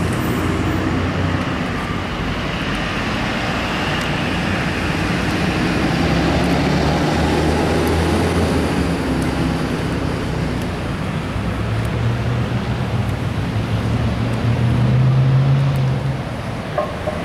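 Street traffic: cars and trucks driving past, with engine and tyre noise. Near the end one vehicle's engine rises in pitch and grows louder as it passes close by.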